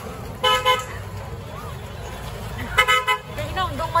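Vehicle horn tooting in short blasts, twice about half a second in and again in a quick burst near the three-second mark, over the low rumble of street traffic.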